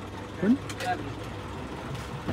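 Short snatches of people's voices, one rising call about half a second in and another just before the one-second mark, over a steady low hum of an engine running nearby.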